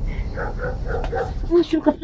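A person's voice making short repeated vocal sounds, about five a second, then breaking into speech near the end, over a low steady rumble.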